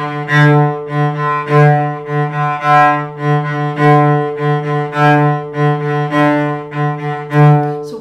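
Cello bowing a single repeated low note in a long-short-short détaché rhythm, the pattern recurring about six times. The two short notes are dug into with the bow and the long note is pulled fast, accented and then released.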